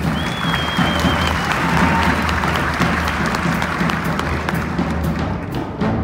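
Audience applauding over a live big band's rhythm section still playing underneath. A high whistle sounds through the clapping for about the first second and a half, and near the end the band's regular hits come back in as the clapping fades.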